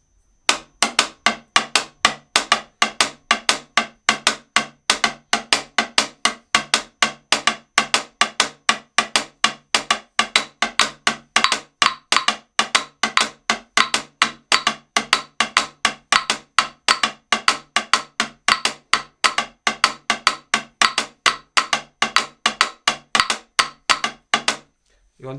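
Catá (guagua), a wooden tube struck with two sticks, playing the repeating guaguancó catá pattern as a steady, fast run of dry, high wooden clicks. The pattern starts about half a second in and keeps going without a break.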